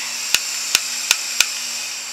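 Handheld butane torch hissing as gas flows, while its igniter clicks four times, about three times a second.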